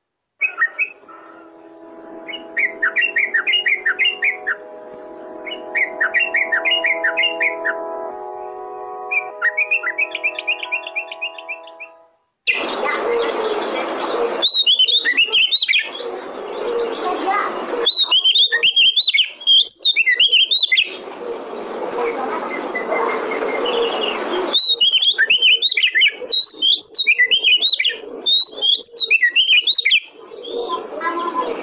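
Oriental magpie-robin (kacer) song in bursts of fast, varied chirping phrases. For the first twelve seconds short repeated phrases sit over a steady chord of low droning tones. Then the sound cuts abruptly to a second recording, where bursts of fast, high song rise over a loud hissy background.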